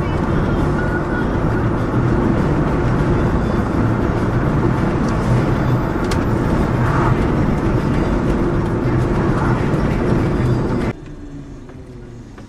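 A car being driven, heard from inside the cabin: loud, steady road and engine noise that drops suddenly to a much quieter level near the end.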